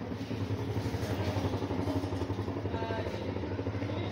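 An engine running steadily: a low, fast-pulsing drone, with a short pitched tone about three seconds in.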